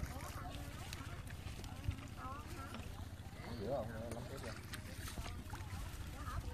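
A steady low rumble with faint voices talking in the background, heard about two and four seconds in.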